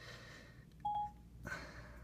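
A single short electronic beep, one clear tone about a second in, followed by a faint click.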